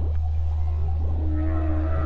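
A whale call over a steady low drone: the moan starts a little over a second in, holds one pitch, then slides down near the end.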